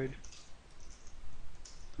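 Computer keyboard being typed on: a quick run of light key clicks as a line of code is entered.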